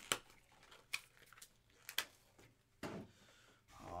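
Three sharp clicks about a second apart, with lighter taps and a brief scuff between them, from trading cards and card boxes being handled on a tabletop.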